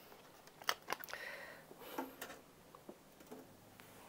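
Faint scattered clicks and rustling as a CD is handled and loaded into a CD player.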